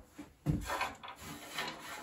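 Small pebbles scattered onto a wooden board made from an old door and swept over it by hand: a scratchy clatter of stones on wood starting about half a second in, with the hand rubbing across the planks.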